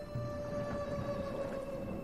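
Background music of soft, sustained held tones, like a slow drone.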